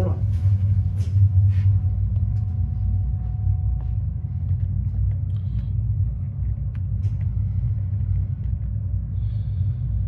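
Steady low hum of a running commercial refrigeration rack's compressors, with a few soft knocks in the first two seconds.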